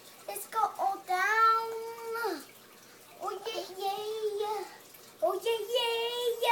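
A young child singing a made-up, wordless song in a few phrases with pauses between, opening with a long held note.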